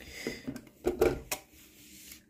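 A few short clicks and rubs as a 1:18 scale model car is handled and turned on a hard tabletop.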